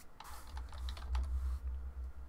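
Typing on a computer keyboard: a quick run of several keystrokes, a short word typed into a search box, over a low rumble.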